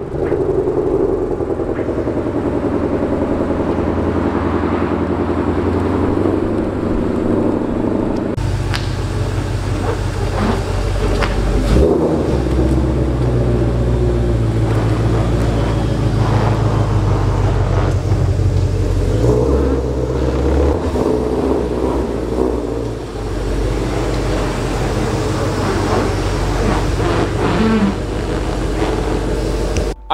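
Ford Shelby GT500's supercharged 5.2-litre V8 running as the car moves at low speed, a steady deep exhaust rumble. The sound changes abruptly about eight seconds in and carries on lower and more uneven.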